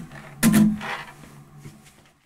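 The closing chord of an acoustic guitar: one sharp strum about half a second in, left to ring and fade out.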